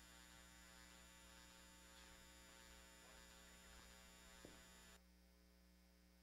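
Near silence with a faint steady electrical hum. There is one small click about four and a half seconds in, and the hum drops lower about a second later.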